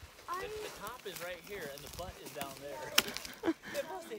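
Voices of several people talking at a distance, quieter than a close narrator. About three seconds in there is a single sharp knock.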